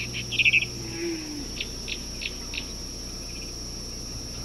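High chirps from a small animal: a quick burst of rapid chirps just after the start, then four single chirps about a third of a second apart, over a steady hum.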